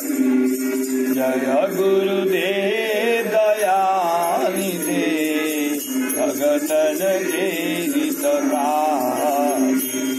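Devotional bhajan being sung, a single melodic voice line over a steady sustained drone note, with jingling bell percussion.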